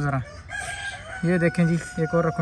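A rooster crowing: one long drawn-out note held for about a second and a half.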